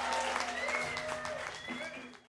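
Scattered audience clapping and a voice calling out while the last chord of a live band's song rings out and fades.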